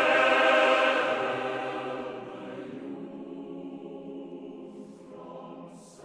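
A mixed four-part chorus with orchestra sings a loud accented chord on "Fell" that dies away over the first couple of seconds. The chorus then carries on softly and more slowly with "the youth from saddle-bow" over quiet orchestral chords.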